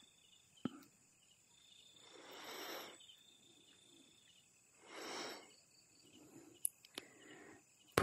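Quiet pause in a spoken talk, with a faint steady chirring of crickets. Two soft rushing sounds, each about a second long, come about two and five seconds in, along with a few faint clicks.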